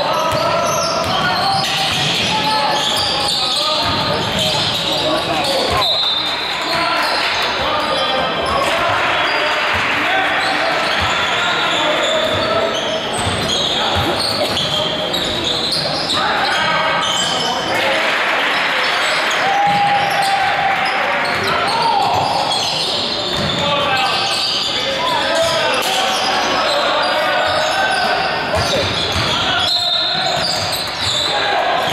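Basketball game sound in a gym hall: a ball bouncing on the hardwood floor under a steady mix of indistinct shouting from players and spectators, all echoing off the hall.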